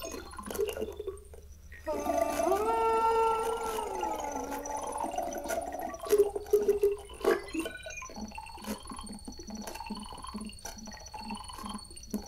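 Live electronic synthesizer sounds played through a wearable hand-and-mouthpiece controller: a pitched tone that glides up, holds and slides back down, scattered clicks, then a steady high tone over a soft pulse about twice a second.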